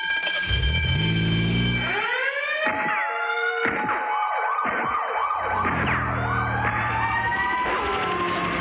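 Police car sirens over music. About two seconds in a siren climbs in pitch, followed by quicker repeated rising sweeps, while a stepping bass line plays underneath.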